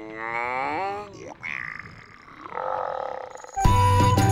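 A comic character voice making drawn-out humming sounds with a wavering, gliding pitch, then a loud music jingle that starts suddenly near the end.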